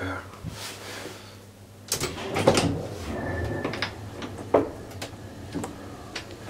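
An old traction elevator car's mechanism and doors: a few sharp clicks and knocks about two seconds in, again half a second later, and once more near the end, over a low steady hum, with a brief high steady tone near the middle.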